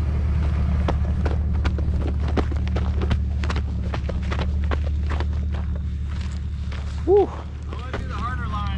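An off-road truck's engine idling with a steady low drone, with irregular footsteps on gravel and rock close to the microphone.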